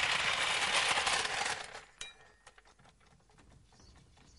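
A loud crashing clatter of many small impacts that dies away about two seconds in, followed by one sharp clink and a few faint scattered clinks and tinkles.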